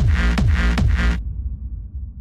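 Hard-dance electronic track: a fast, distorted kick drum with a falling pitch on every hit, about three beats a second, driving under a dense synth layer. The beat cuts off suddenly about a second in, leaving a low rumble that fades away.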